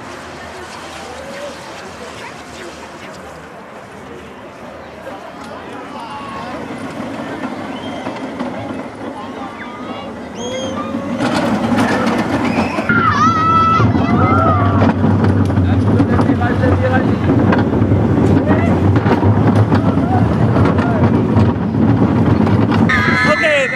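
Vekoma junior roller coaster train running along its steel track: a quieter rumble at first, then, about eleven seconds in, a much louder steady rumble of wheels on track mixed with wind, with a few shouts from riders.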